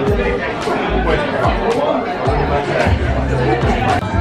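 Busy restaurant chatter: many diners' voices talking over one another, none clear, with music playing underneath.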